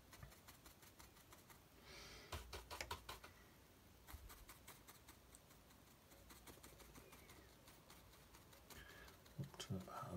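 Faint, irregular soft tapping of a splayed-bristle watercolour brush dabbing paint onto paper, in small clusters of quick taps.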